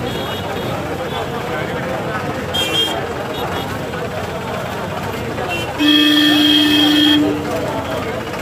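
Steady hubbub of a large crowd walking in a procession, with a vehicle horn held once for about a second and a half near the end, the loudest sound. A brief shrill tone comes about two and a half seconds in.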